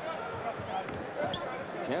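A basketball being dribbled on a hardwood court, a few irregular knocks over the low hum of an arena crowd, heard through an old TV broadcast.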